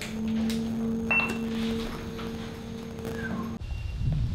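Lift car running with a steady low hum, and a short high beep about a second in as a floor button is pressed. The hum cuts off suddenly near the end.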